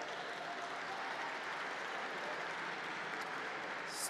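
Steady audience applause.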